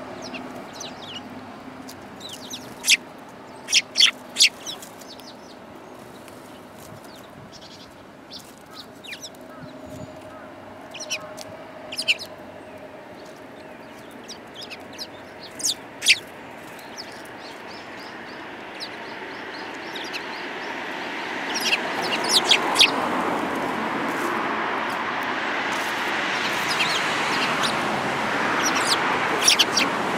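Eurasian tree sparrows giving short, sharp chirps, scattered singly and in quick groups of two or three. A steady rushing background noise swells up about two-thirds of the way through.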